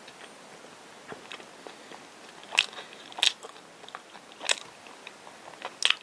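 Close-miked mouth chewing a soft, chewy rice-cake bread filled with cream: scattered wet clicks and smacks, a few louder ones spaced about a second apart.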